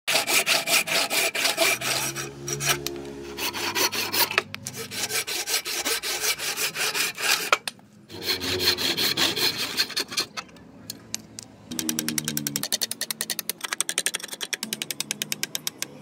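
Hand saw cutting a hardwood axe-handle blank in steady back-and-forth rasping strokes, with a few short breaks and a quicker run of short strokes near the end.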